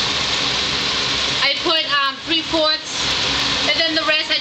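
Keftedakia (Greek meatballs) frying in hot oil in a pan, a steady sizzle throughout, with a voice speaking over it from about halfway in.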